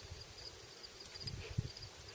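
Faint cricket chirping: a steady run of quick, high-pitched pulses, over a low rumble.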